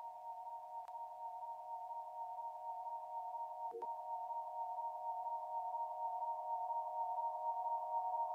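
Opening of an electronic track: a quiet sustained chord of a few near-pure synthesizer tones, held steady and slowly swelling in loudness.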